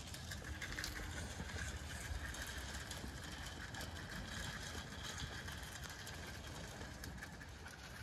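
Zwartbles sheep eating feed from a trough: faint, irregular crunching clicks over a low rumble of wind on the microphone.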